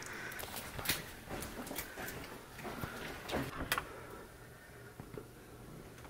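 Quiet movement and handling noises: a scattered handful of soft clicks and knocks at irregular intervals, growing quieter after about four seconds.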